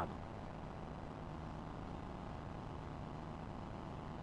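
Faint steady low hum and hiss of background noise, with no distinct sounds standing out.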